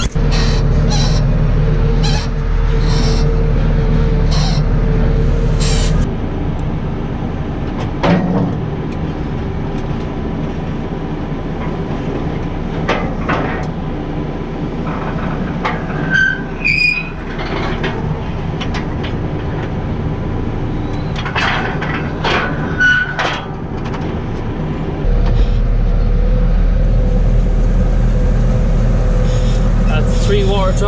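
Tractor engine running steadily, heard from inside the cab while the buck rake carries a water trough. The drone drops in level about six seconds in and comes back strongly near the end, with scattered knocks and clanks in between.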